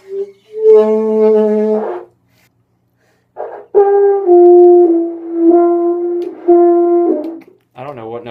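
An alto saxophone sounds a short note and then one held note. About a second and a half later a French horn comes in with a short note, steps down and holds a few low notes with brief breaks between them: a beginner's attempt at the horn.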